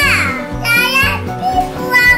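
A young child talking over background music with a steady, repeating bass line.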